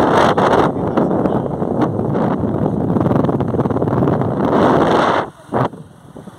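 Wind rushing and buffeting over the microphone on a moving motorcycle, a loud, even roar that drops away abruptly about five seconds in.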